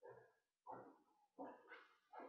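Dog barking faintly, four short barks in quick succession.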